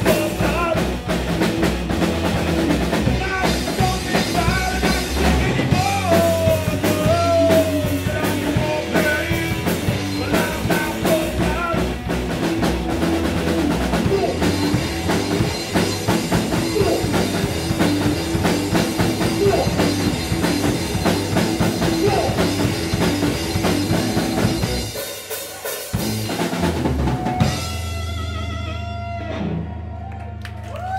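Rock band playing live: electric guitars, bass and drum kit with a male singer. About 25 s in the band breaks off for a moment, comes back in, then lets a final chord ring out to close the song.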